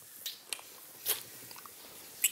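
A few faint, wet lip smacks of a couple kissing, the strongest about a second in.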